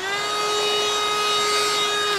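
Black & Decker vacuum cleaner switched on: its motor whine rises quickly in pitch during the first half second, then runs at a steady pitch.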